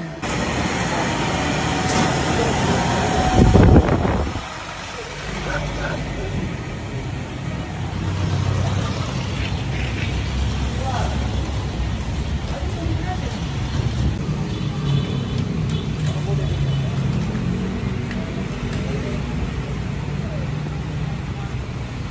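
Street and vehicle noise: a motor vehicle's engine running steadily with a low hum that swells slightly in pitch around the middle, after a loud low rumble about three and a half seconds in.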